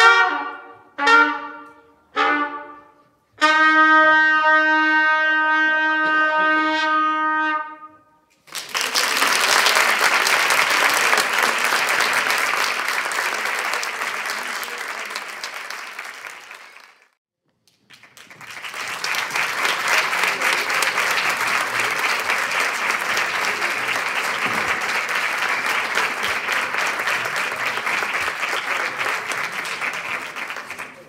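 Trumpets play three short notes and then a long held final note that ends the piece. Audience applause follows and fades away, then after a brief pause the applause starts again and runs on.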